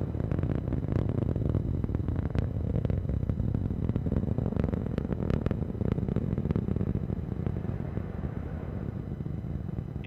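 Atlas V rocket in powered ascent, its RD-180 main engine (throttled down through max Q) and solid rocket boosters giving a steady, dense low rumble with crackling, a little quieter near the end.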